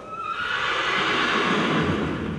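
A horse whinnying: one call of about a second and a half that rises at the start and falls away toward the end.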